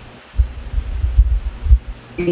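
Microphone handling noise: a run of low thuds and rumble, starting about half a second in and stopping shortly before the end.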